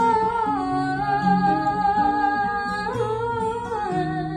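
A woman's voice sings a long wordless held note over fingerpicked notes on a Yamaha FX310 acoustic guitar. The voice steps down in pitch about half a second in, rises briefly near three seconds and drops back near the end.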